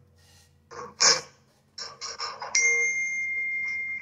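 A few light knocks as the wooden drawer pieces are handled, then a steady high-pitched beep-like tone begins about two and a half seconds in and holds without fading.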